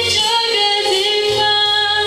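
A young woman singing a Mandarin pop ballad into a microphone, holding and bending long notes over a recorded pop backing track with a bass line.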